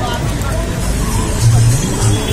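Busy street noise: a steady low traffic drone with voices of passers-by in the background, the low part swelling briefly near the end.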